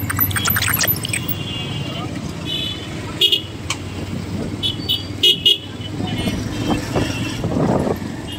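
Busy street traffic with a steady low rumble and several short, high-pitched horn toots from passing vehicles.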